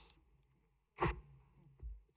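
A pause between spoken vote totals, nearly silent for the first second. About a second in comes a short, sharp sound from a voice at the microphone, and near the end a soft low bump.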